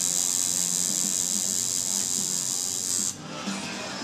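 Coil tattoo machine buzzing steadily as it works colour into the skin, switching off about three seconds in.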